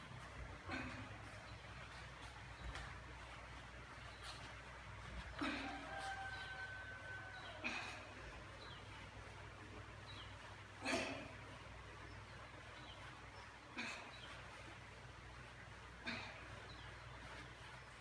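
Short, sharp breaths or grunts every two to three seconds, the loudest about eleven seconds in, from a woman straining through crisscross crunches, over a steady low hum.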